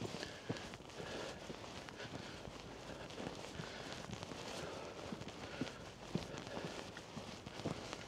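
Faint footsteps on a paved lane, soft irregular steps of walking shoes over a low outdoor hiss.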